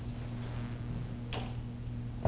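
Quiet room tone with a steady low electrical hum, and one faint short click about two-thirds of the way through.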